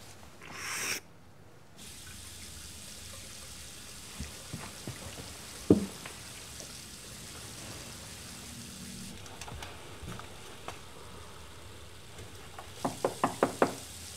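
Quiet small-room tone with a few scattered clicks, then near the end a quick run of about six knocks on a door.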